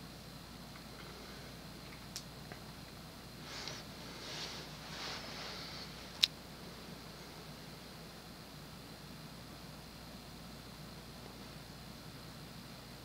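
Modern Fan Co Cirrus Hugger ceiling fan's GE stack motor running steadily on medium speed, a faint even hum. Soft rustling comes in the middle, and a sharp click about six seconds in.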